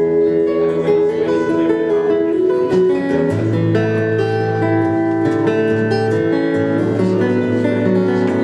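Acoustic guitar played live, an instrumental passage of picked and strummed chords, with a low bass note ringing in from about three seconds in.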